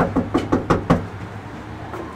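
Knuckles rapping on a front door: a quick run of about five knocks in the first second, then they stop.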